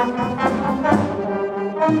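A school wind band playing together, with trombones, trumpets and saxophones leading over clarinets and a sousaphone bass. The notes change every half second or so.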